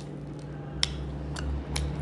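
Fingers picking dried cranberries out of a small glass bowl, giving three or four light clicks against the glass in the second second, over a low steady hum.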